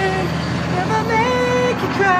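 A man's voice sliding up into a high, held note about a second in, then gliding down, over the steady low hum of an idling engine.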